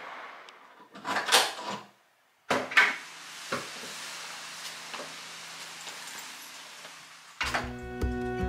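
Front door being opened and shut with sharp knocks, then a few isolated clicks of shoes on a tiled entryway floor. Acoustic guitar music starts near the end.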